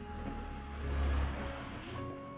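Okra pieces sizzling in oil in a non-stick kadhai as a steel ladle scoops them out, with a low rumble swelling about a second in. Soft background music runs underneath.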